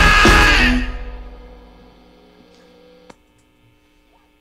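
Live rock band with drum kit and electric guitars playing loud, then stopping together on a final hit under a second in; the last notes ring out and fade away over about two seconds. A single faint click comes about three seconds in.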